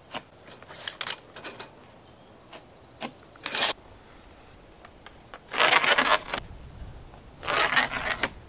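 A long metal straightedge being slid and repositioned across a sheet of siding, with pencil marking: a few light taps and ticks, then short scrapes, the loudest about halfway through and again near the end.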